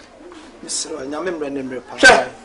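A man speaking in a low voice, from about half a second in until near the end.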